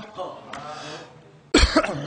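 A man coughs once, sharply, into a close microphone about one and a half seconds in, after a short quiet pause with faint breath.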